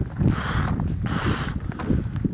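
A man blowing out two long breathy exhalations through his lips, trying for a relaxed lip-flutter that his cold lips won't make. Low wind rumble on the microphone runs underneath.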